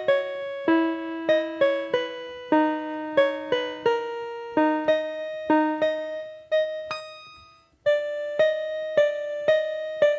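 Piano played one note at a time in a slow, simple melody of about two notes a second, each note ringing out and fading. About seven seconds in the playing stops briefly and a note dies away, then the melody resumes.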